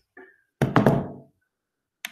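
A quick cluster of knocks or thuds, loud, a little over half a second in, dying away within about half a second. A fainter short sound comes just before it.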